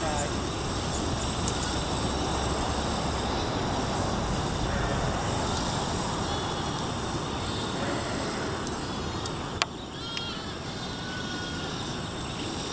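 Steady outdoor background noise with a few faint high chirps, and one sharp click about ten seconds in.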